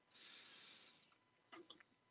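Near silence: a faint hiss through the first second, then a few faint clicks.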